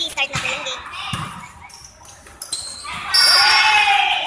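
A volleyball bounced on the gym floor a couple of times, then a loud, shrill referee's whistle blast about three seconds in, signalling the start of play for the serve.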